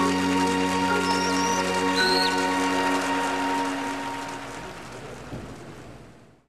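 Audience applause over the last held chord of a trot backing track, both fading out in the second half.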